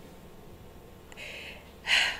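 A woman's breathing in a pause between phrases: a soft breath about a second in, then a sharper intake of breath near the end.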